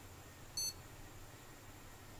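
A single short, high-pitched beep from a motherboard's POST buzzer as the board powers on, over a faint steady hum from the running test bench.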